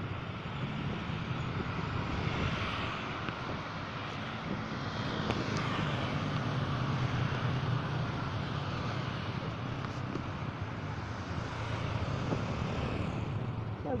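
Steady road traffic noise: a continuous rumble of passing vehicles that swells a little in the middle.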